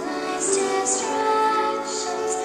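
A children's choir singing a song, with notes held and the 's' sounds of the words clearly heard.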